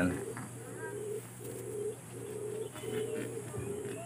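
Domestic pigeon cooing: a run of about seven short, low coos in a row.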